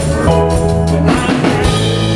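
Live country-blues band playing an instrumental passage: electric guitar over a drum kit, with a steady bass line underneath.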